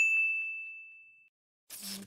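A single bright bell-like ding, a title-card sound effect, struck once and fading away over about a second. Near the end comes a short hiss-like noise.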